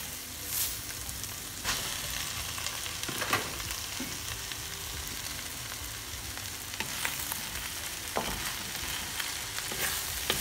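Stir-fried noodles and vegetables sizzling in a hot pan as they are stirred, a steady hiss broken by a few sharp knocks of the utensil against the pan.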